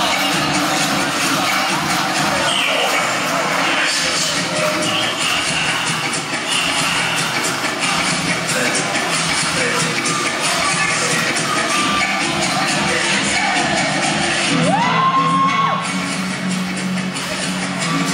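Saya dance music playing loudly in a large hall, with an audience cheering and shouting over it. One long rising call near the end.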